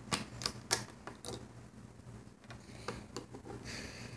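Light clicks and taps of a hook working rubber bands over the pegs of a small plastic Alpha Loom: several sharp clicks in the first second and a half, then sparser ones, with a short rustle just before the end.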